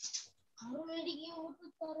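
A child's voice: a brief hiss, then one drawn-out, sing-song syllable lasting about a second, then a short word near the end.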